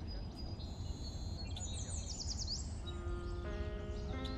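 Outdoor field ambience: a low steady rumble with birds chirping, including a quick run of high, falling chirps about halfway through. Soft music of held tones comes in near the end.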